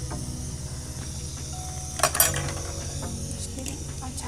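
A glass cooking-pot lid clinks sharply once, about halfway through, as it is lifted off the pot, over steady background music.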